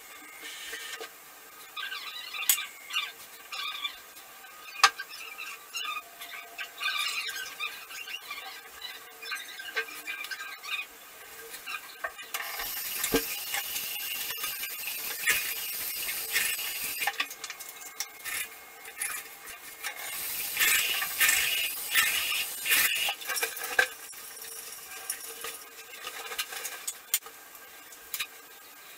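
Hands preparing a face mask at a ceramic sink: light clicks, clinks and squeaky scraping of stirring in a small dish, with two longer spells of steady hiss in the middle.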